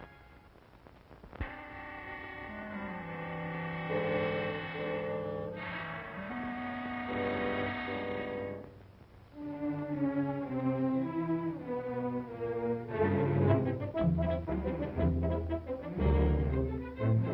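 Orchestral background score with brass and strings, playing held chords that dip quietly about nine seconds in. It turns louder and more rhythmic near the end.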